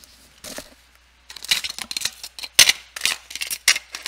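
Small hard items clicking and rattling in an open box as it is rummaged through for a pin, a quick irregular run of sharp clicks starting about a second in.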